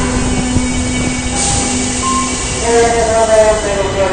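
Kita-Osaka Kyuko 9000 series electric train starting away from an underground platform. A steady low hum is followed, about two-thirds of the way in, by the traction motors' whine rising in pitch as the train accelerates.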